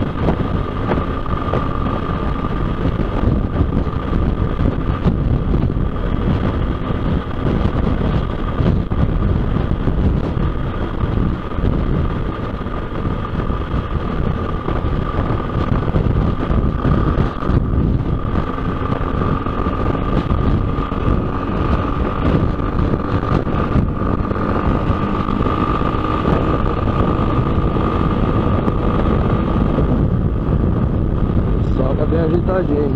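Motorcycle at highway speed: heavy, steady wind rush on the rider-mounted microphone over the engine's even drone, with a steady high whine running through it.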